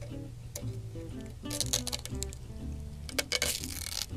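Background music, with the crackle of tape being peeled off a freshly painted wooden drawer front in two short stretches, about one and a half and three seconds in.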